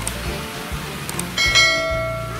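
A single bright bell ding about one and a half seconds in, just after a couple of faint clicks, ringing on and slowly fading: the notification-bell sound effect of a subscribe-button animation. Background music runs underneath.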